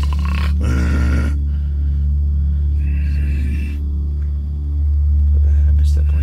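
A man asleep making sleep noises: a drawn-out groaning sigh in the first second or so, then a breathy sound about three seconds in, over a steady low hum.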